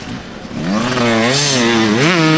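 Enduro motorcycle engine, quieter at first, then revved hard about two-thirds of a second in, its pitch climbing and wavering as the throttle is worked.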